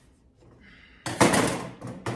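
Stiff new canvas seat fabric rustling and snapping, with knocks, as it is worked over the stand's seat frame: a sudden loud burst about a second in that fades over most of a second, and another sharp onset near the end.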